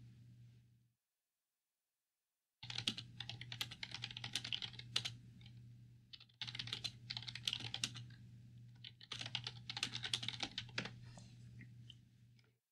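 Typing on a computer keyboard close to a microphone: after about two and a half seconds of silence, three runs of irregular key clicks, with a low steady hum underneath while they sound.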